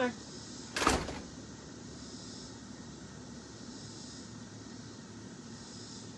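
A single short thump about a second in, followed by a low, steady background hiss.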